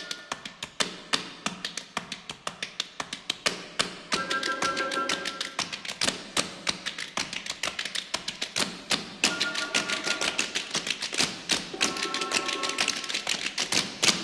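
Tap dancing: a rapid run of sharp taps over orchestral accompaniment, with short held chords from the orchestra coming in and dropping out between the taps.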